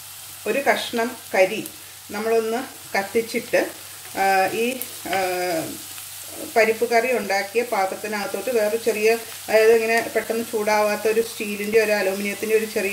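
A woman talking over onions sautéing in ghee in a non-stick wok, with a faint steady sizzle and the scrape of a spatula stirring them.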